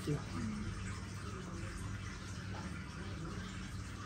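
Steady low background noise with a faint hum, room tone with no distinct events.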